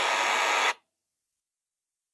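A steady burst of static hiss, spread evenly from low to high, that cuts off abruptly less than a second in and leaves dead digital silence: an audio glitch or dropout in the stream.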